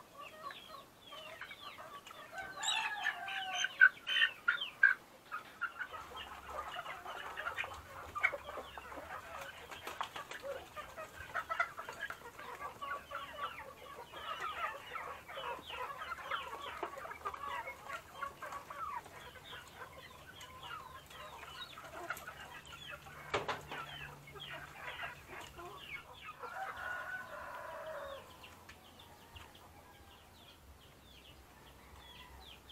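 Backyard chickens clucking, with a louder cluster of calls a few seconds in and a longer pitched call near the end.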